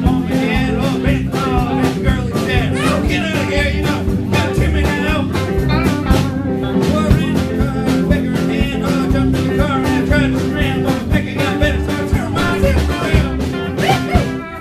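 A rock band playing a song: electric guitar and bass guitar over a steady beat, with some singing.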